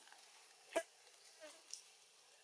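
Faint forest ambience with a thin, steady, high-pitched insect whine, broken by one short sharp crackle about three quarters of a second in.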